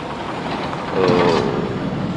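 Shovels scraping through wet snow and gravel on a building site. About a second in, a man's voice gives a drawn-out hesitation sound.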